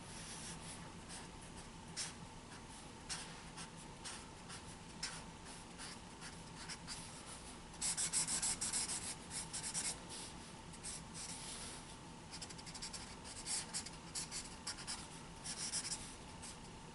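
Thick felt-tip marker stroking across a large paper pad in many short scratchy strokes as solid black areas are filled in, with a denser, louder run of strokes about eight seconds in and quick short dabs near the end.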